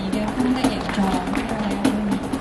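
Live busking band playing a ballad: a female voice sings sustained notes over acoustic guitar and keyboard, with sharp cajón hits marking the beat.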